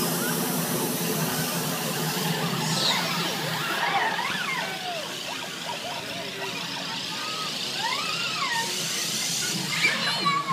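Hiss of water mist spraying from a splash-pad fixture over a steady low hum, the hiss easing after about two seconds. A voice calls out briefly twice, around four and eight seconds in.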